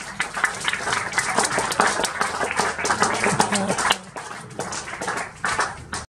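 Audience applauding with scattered voices among the clapping. The applause thins out and gets quieter about four seconds in.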